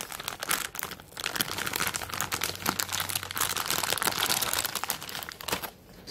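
Thin plastic deli-meat package crinkling as fingers rummage inside the torn-open bag to pull out turkey slices, stopping just before the end.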